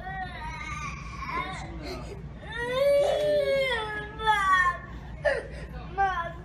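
A young boy's high voice making drawn-out, whiny wailing sounds without words, sliding up and down in pitch, several in a row and loudest in the middle. A short sharp sound comes near the end.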